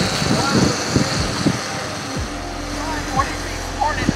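Riding noise from an electric skateboard group ride on a paved path: a continuous rush of wheels rolling and wind on the microphone, with a faint steady high whine from the board motors.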